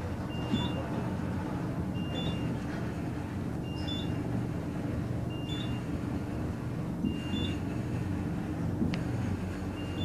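Fujitec traction elevator cab running downward, with a steady low hum. A short two-note electronic beep sounds about every second and a half, once for each floor it passes.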